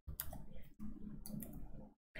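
Several light, irregular clicks over a low steady hum.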